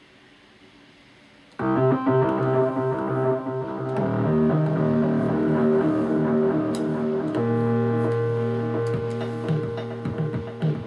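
Casio SK-8 keyboard playing sustained chords through delay and reverb effects. The chords come in suddenly about a second and a half in and change twice, with short, quickly repeated notes near the end.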